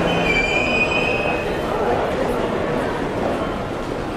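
A high brake squeal lasting about a second and a half near the start, over steady street and station noise.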